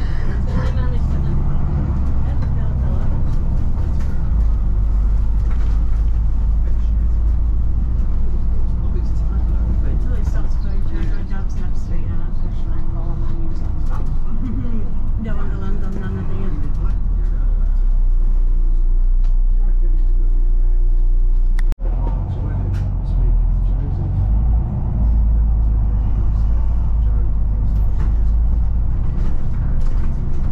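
Cabin sound of a Volvo B9TL double-decker bus under way: its diesel engine and ZF Ecolife automatic drivetrain running with a heavy low rumble and road noise. There is a brief sudden dropout in the sound a little over two-thirds through.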